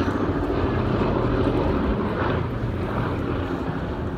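Boeing B-17G Flying Fortress's four Wright Cyclone radial engines droning steadily as it flies past low, easing off slightly as it draws away.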